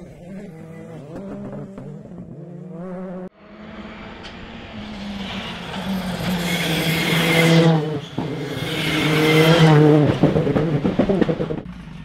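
Rally car engines on a special stage. First a car is heard at a distance through a corner. After a sudden cut, another car approaches at full throttle, its engine note climbing through the gears with short breaks at the gear changes. It grows loud as it nears, is loudest about ten seconds in, then fades.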